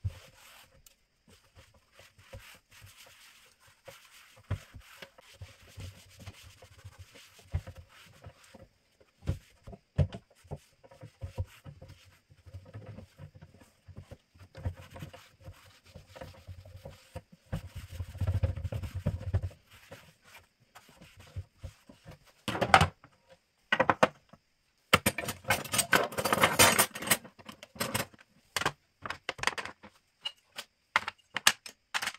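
A cloth rubbing and wiping the inside of a metal kitchen drawer, with occasional light knocks. In the last few seconds there is a loud clatter of wooden and metal kitchen utensils being put back into the drawer.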